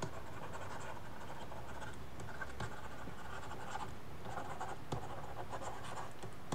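A stylus writing by hand on a tablet surface: short bursts of scratchy strokes with a few light taps as each word is written.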